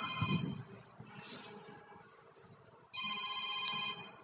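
Smartphone ringtone ringing for an incoming call: a high electronic ring made of several steady tones. It sounds twice, the first ring ending about a second in and the second starting about three seconds in.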